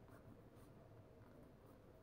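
Faint scratching of a pen writing by hand on a paper workbook page.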